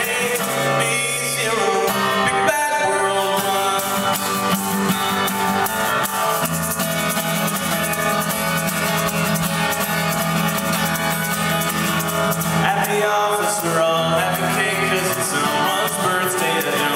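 Live acoustic guitar strummed steadily under male vocals singing a folk-pop song, with a lead voice and backing harmonies.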